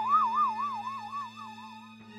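A comic sound effect: a single warbling, whistle-like tone that wobbles up and down about five times a second, sinking a little and fading away. Under it is a steady low music drone.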